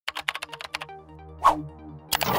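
A quick run of computer-keyboard typing clicks, about eight in the first second, over a low held music tone. A single short hit comes about one and a half seconds in.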